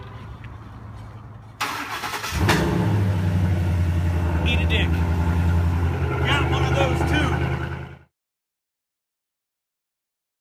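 Ford F-150 SVT Raptor's V8 engine starting: a short burst of cranking, then it catches and runs steadily at idle for several seconds before the sound stops abruptly.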